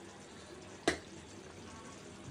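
Chicken pieces simmering faintly in oil and water in a pan, with one sharp click about a second in.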